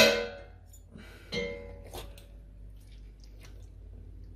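Metal forks knocking against a heavy cast-iron pot: one loud ringing clang at the start, then a softer clink about a second and a half later.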